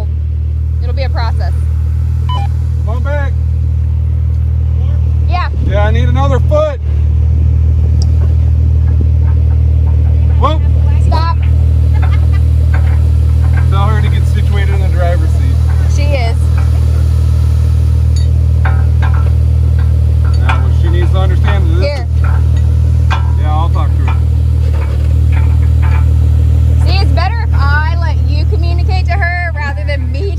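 A Jeep engine idling steadily close by while a recovery strap is hooked up, with indistinct voices over it.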